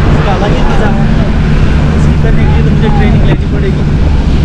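Indistinct voices of people chatting in the background over a steady low rumble.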